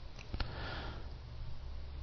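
A man's short sniff, breathing in through the nose about half a second in, after a small mouth click, over a steady low hum in the recording.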